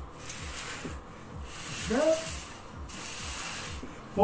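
Paper plates sliding under the hands across the floor in the alternating plate push-out exercise. They make a scraping hiss in three long strokes of about a second each.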